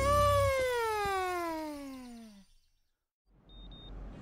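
A single pitched tone with overtones that jumps up and then slides steadily down over about two and a half seconds, fading out as a song ends. About a second of silence follows, then faint background noise.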